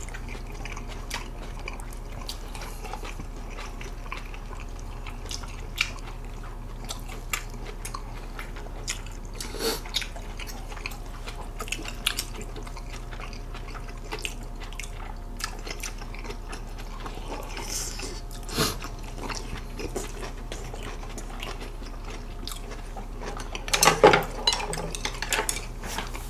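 Close-miked chewing of thick chunks of smoked pork belly: soft wet mouth sounds with scattered short clicks of chopsticks and dishes over a steady low hum. A few louder sounds come near the end.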